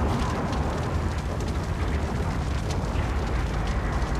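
Animated sound effect of a large fire burning: a steady low rumble with faint, scattered crackling.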